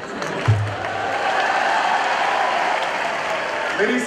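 Audience applauding: dense, steady clapping that builds within the first second and holds until the speaker resumes. A short low thump sounds about half a second in.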